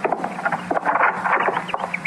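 Radio-drama sound effects of a door being shut: scattered clicks and knocks, then a short run of high squeaks from the hinge near the end.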